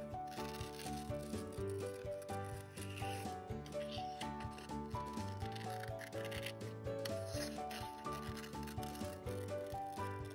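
Background music with a melody over a steady bass, with scissors snipping and rubbing through construction paper.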